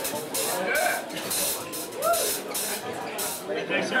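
Voices of a club crowd between songs, with a couple of short calls, over a run of short hissy bursts that stops near the end.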